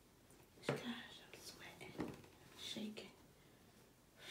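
A cardboard gift box being handled and closed up on a counter: three sharp taps, the loudest about a second in, with rustling between them.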